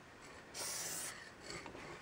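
Low-pressure Sigma spray paint can spraying through an Ironlak pink stock tip cap: a single short hiss lasting about half a second, starting about half a second in.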